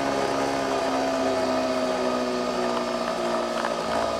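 Nespresso Vertuo capsule coffee machine brewing, with a steady, even mechanical hum from its spinning capsule and pump while coffee pours into the glass.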